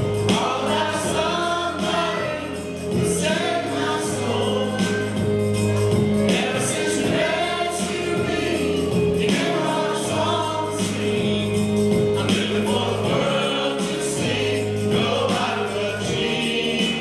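Gospel song sung by a small mixed group of men's and women's voices through microphones, over an instrumental accompaniment with long held notes.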